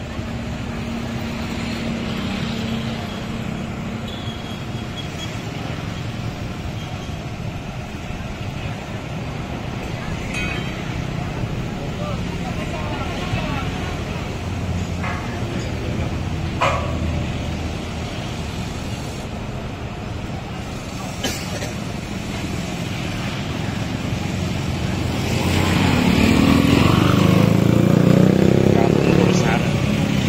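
Truck-mounted crane's diesel engine running steadily, mixed with road traffic noise, with a couple of sharp knocks partway through. The engine noise swells louder over the last few seconds.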